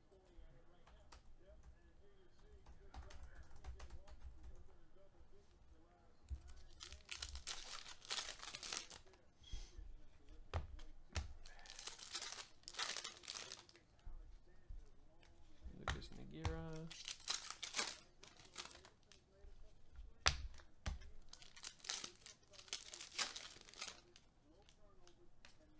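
Foil trading-card pack wrappers being torn open and crinkled by hand, in several short bursts of ripping and rustling.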